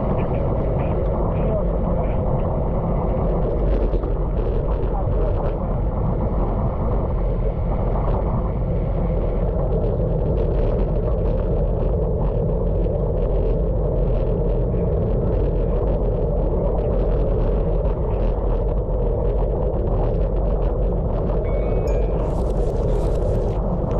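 Steady rush of wind and tyre noise on a road bike's action camera riding a wet, flooded road in rain, with a scatter of small ticks from water and spray.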